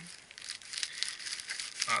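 Plastic courier mailer bag crinkling as it is handled, with many small crackles.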